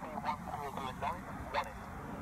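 A flock of birds calling: a quick run of short, repeated calls, several a second, that stops about a second and a half in.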